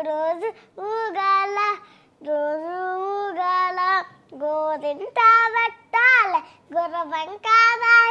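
A young girl singing a song unaccompanied, in short held phrases with sliding, wavering notes and brief pauses for breath between them.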